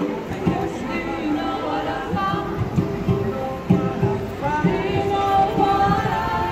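Live band music with singing: voices and brass over a steady beat.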